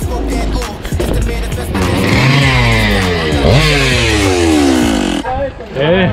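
A small petrol engine, like a motorbike's, running close by from about two seconds in, its pitch falling twice over some three seconds; background music plays before it.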